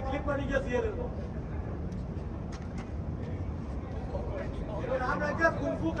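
Men's voices calling out and talking, in the first second and again near the end, over a steady low rumble of the large air-supported sports dome, with a few faint clicks in the middle.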